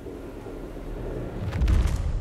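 A low rumble swells and breaks into a heavy boom with a crackle on top about one and a half seconds in: the dramatized impact of Formula 1 cars colliding in a start crash. A low rumble carries on after the hit.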